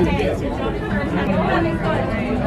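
Several people chattering together over a steady low rumble.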